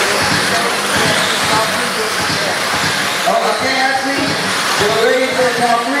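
Several electric RC sprint cars with 13.5-turn brushless motors running laps on a dirt oval, a steady whir of motors and tyres on the dirt. Indistinct voices join about halfway in.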